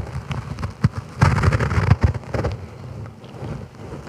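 Clothing rustling against a clip-on lapel microphone, with a few knocks; loudest from about one to two and a half seconds in, then fading.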